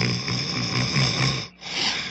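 Cartoon caveman snoring in his sleep: a long, rasping snore for about a second and a half, a brief break, then the next breath starting and fading away.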